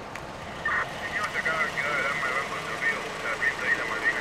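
A car engine running as it pulls up, with a higher wavering, warbling sound coming and going over it from about a second in.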